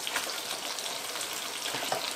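Sea bass fillets and lemon slices sizzling in hot oil in a frying pan: a steady, even hiss.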